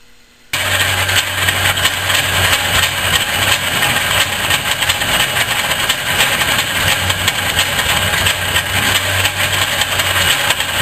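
Metal lathe running with its cutting tool working the face of a spinning metal workpiece: a steady motor hum under a continuous rough hiss of cutting, starting abruptly about half a second in.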